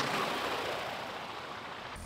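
A rushing whoosh that peaks at the start and fades slowly, with no steady engine or propeller tone in it.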